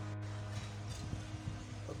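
Soft background music with sustained low notes, with a few faint taps from components being handled.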